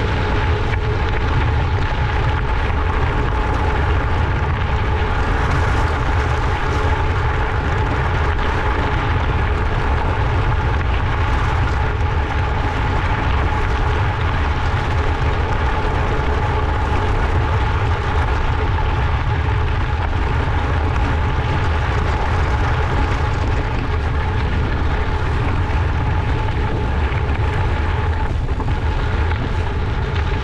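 Gravel-bike tyres rolling over a gravel road with wind buffeting the microphone: a steady low rumble under an even gritty hiss, with a faint constant hum on top.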